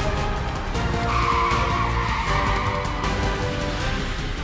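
A car skidding: tyres squeal for about two seconds, starting about a second in, over the low rumble of the car.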